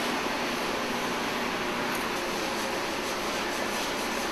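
Steady rushing machine noise from the workshop, unchanging in level, with a faint steady tone joining it about two seconds in.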